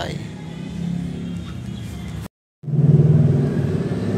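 Another vehicle's engine running steadily close by, a low hum, not the CR-V, which will not start. The sound breaks off briefly a little past halfway and comes back louder.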